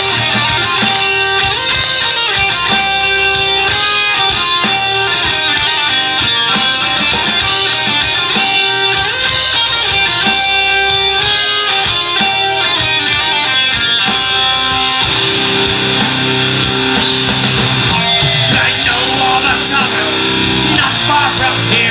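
Live folk-metal band playing loudly: a keytar melody in held, stepping notes over electric guitars and drums, recorded from the audience.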